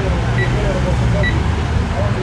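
Door-entry intercom keypad beeping twice, one short high beep for each of two digits pressed, over the steady low rumble of street traffic.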